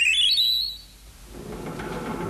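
A short electronic jingle: a quick run of high chime-like notes stepping upward, ending about two-thirds of a second in. Soft background music starts up about halfway through.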